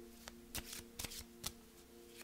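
A deck of oracle cards being shuffled by hand: about five short, faint card snaps spread over two seconds.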